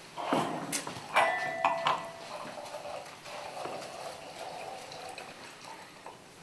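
Red wine being poured from a bottle into a stemmed wine glass, the liquid gurgling and splashing into the glass. In the first two seconds there are a few sharp glass clinks, one leaving a brief ringing tone.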